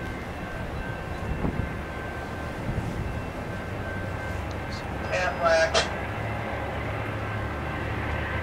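Low, steady rumble of an approaching diesel-hauled train, with a short louder burst about five seconds in.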